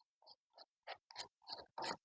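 Faint, irregular crumbling and scraping of potting compost as a hand scoop digs it and tips it into the cells of a seed tray: several short scratches a fraction of a second apart, the loudest near the end.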